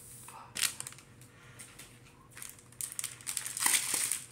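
Foil wrapper of a Pokémon card booster pack crinkling as it is handled, with denser, louder crackling in the last second.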